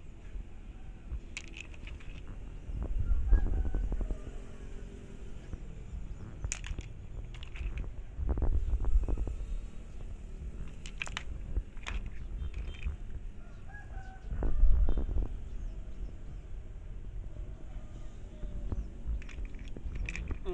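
A rooster crowing a few times in the background, each crow about a second long. Between the crows there are a few sharp clicks of stones knocking together.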